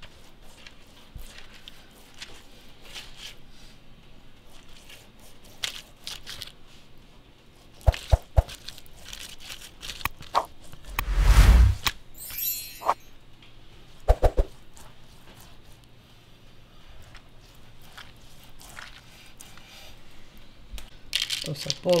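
Baking paper crinkling and rustling as a silicone pastry brush works glaze over rolls on a baking tray, with scattered light clicks and a louder bump about eleven seconds in.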